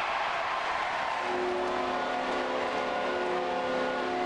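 Ice hockey arena crowd cheering a home goal. A goal horn joins about a second in and holds a steady multi-tone blast.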